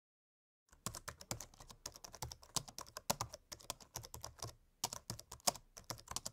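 Computer keyboard typing sound effect: quick, uneven key clicks that start nearly a second in and pause briefly just before the five-second mark.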